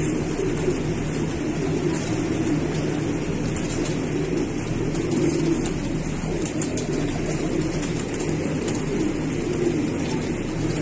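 Pigeons cooing in a loft, many birds at once, making a steady, unbroken sound that never pauses.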